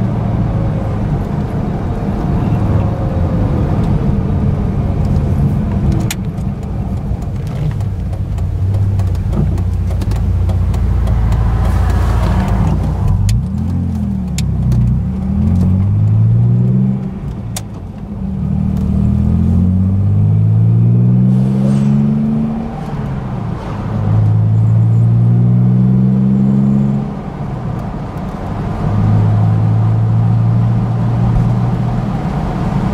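Ford Capri engine heard from inside the cabin, running at a steady cruise drone at first. From about halfway through it revs up again and again with short dips in between, as the car accelerates up through the gears.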